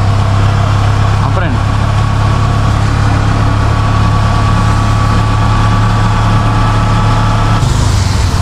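Tuk-tuk (auto rickshaw) engine running steadily as it drives, heard from inside its open cabin, with the hiss of rain and tyres on a wet road.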